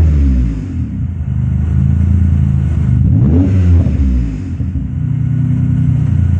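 Mitsubishi 3000GT VR-4's twin-turbo V6 running through a modified exhaust with a 3" downpipe, pre-cat delete, STM resonator and Apexi N1 muffler. It settles down from a rev to idle, gets one quick blip of the throttle about three seconds in, and drops back to idle.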